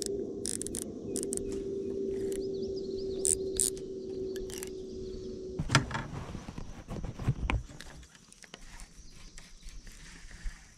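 A baitcasting reel's star drag clicking in a few short, sharp clicks as it is backed off, because it was set too high. Under it a steady hum cuts off a little over halfway through, followed by a knock.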